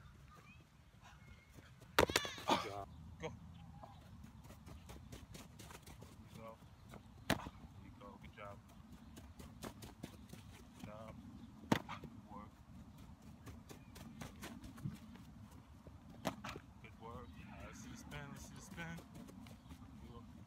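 Outdoor field ambience with a steady low rumble, indistinct voices, and a few sharp smacks: one loud about two seconds in, others about seven and twelve seconds in.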